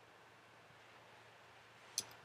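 Near silence: faint steady hiss of room tone, with one brief click at the very end.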